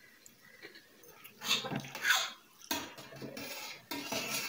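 A person eating noodles: two loud slurps about a second and a half in, then a fork and spoon clinking and scraping against a steel plate.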